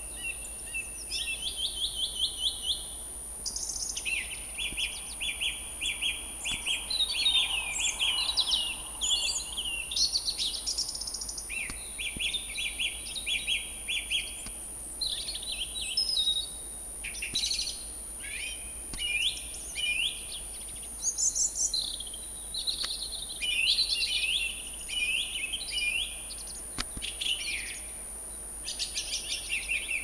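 Song thrush singing: short phrases of quick, clear notes, each phrase repeated several times in a row before the bird moves on to a new one, with brief pauses between phrases.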